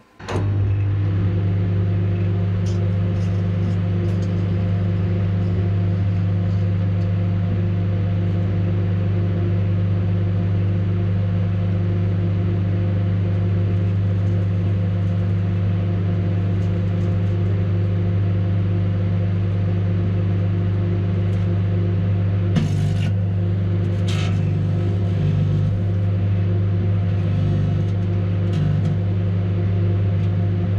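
Hinari microwave oven switched on and running with a steady electrical hum. From about two-thirds of the way in there are a few sharp crackles and pops as the car key fob inside sparks and begins to burn.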